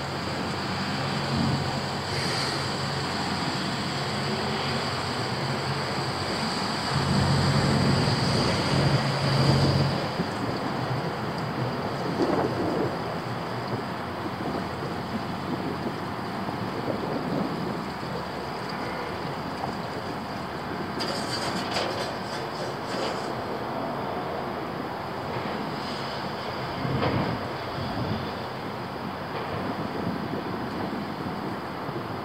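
Steady outdoor rumble with wind noise on the microphone. A low hum runs through the first ten seconds and swells around eight seconds in, then fades into the general rumble.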